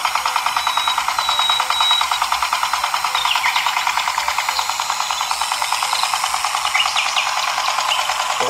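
The small electric gear motor of a toy tractor running under load, a fast, even buzzing rattle as it hauls another toy tractor on a chain.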